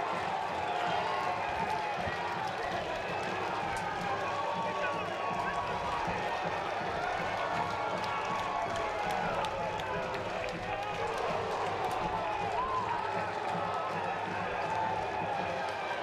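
Ballpark crowd noise after a grand slam: a steady din of many voices shouting and cheering at once, with no single voice standing out.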